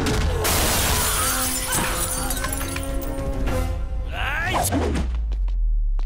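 Fight-scene sound effects over dramatic background music. About half a second in comes a loud crash with shattering that lasts about three seconds, and rising sweeps follow near the end, over a steady heavy bass.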